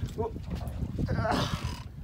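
Short strained grunts and a breathy rush of air from a man fighting a big shark on a heavily bent rod, over a low steady rumble.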